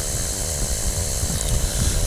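Flexwing microlight trike's engine and propeller running steadily in cruise, a continuous drone mixed with rushing air in the open cockpit.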